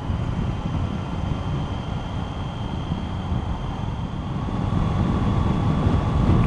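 Triumph Tiger motorcycle under way on an open road, heard from a mic on the bike as steady low engine, wind and road noise, growing a little louder over the last couple of seconds.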